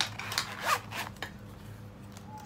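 Metal zipper of a python-skin zip-around wallet being unzipped: a few quick rasping pulls in the first second or so, the loudest just before the middle.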